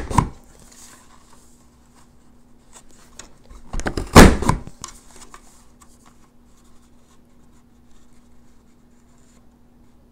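Creative Memories Boot Prints border punch pressed down on a paper strip: a loud clunk and crunch of the cut right at the start and again, with a double knock, about four seconds in. Soft rustling of the paper strip being slid through the punch to line up the next cut.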